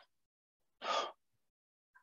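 A man takes one audible breath about a second in, lasting about a third of a second; the rest is silence.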